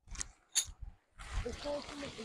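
Heavy canvas tent fabric rustling as it is lifted and shaken out, with two sharp snaps near the start. A voice sounds faintly under the rustle in the second half.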